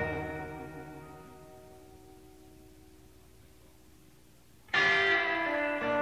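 Electric guitar chord ringing out and fading over about two seconds after the band stops, then a brief quiet pause. Sustained electric guitar notes start abruptly near the end.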